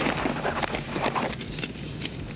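Wind buffeting the microphone in a low rumble, with the crinkle and rustle of a paper receipt being pulled out and unfolded by hand.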